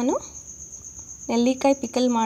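A continuous high-pitched cricket trill, steady with faint rapid pulsing, under a woman's voice that speaks briefly at the start and again from just past halfway in.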